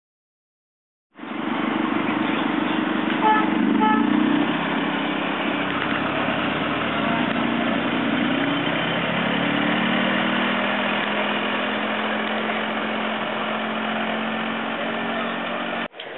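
Farm tractor engine running as it pulls a passenger wagon past, starting about a second in, with two short horn beeps about three seconds in.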